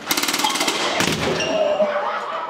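A rapid, automatic-gunfire-like rattle for about a second, ending in one louder single bang.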